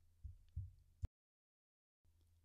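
Near silence: a faint low electrical hum with two soft low thumps, then a sharp click about a second in, after which the sound cuts to dead digital silence.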